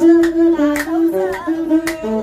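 Ethiopian azmari song: a singing voice holding and stepping between sustained notes, with a masinko (one-string bowed fiddle) playing along.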